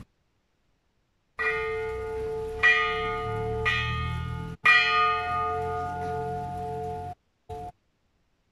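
A hanging bell struck four times, about a second apart, each strike ringing on into the next, starting about a second and a half in and cutting off suddenly near the end.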